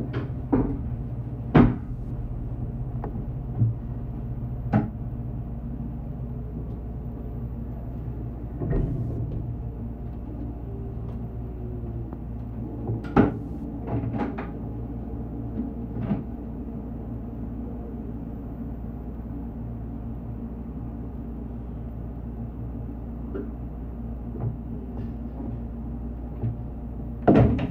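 Steady electrical hum of a stopped electric train heard inside the driver's cab. Sharp clicks and knocks come and go over it, most of them in the first few seconds and in a cluster about halfway through, as the driver handles the cab's fittings.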